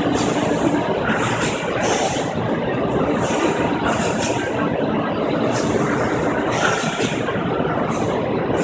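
Loud, steady din of running plastics machinery in a trade fair exhibition hall: a dense mechanical noise with no single machine standing out.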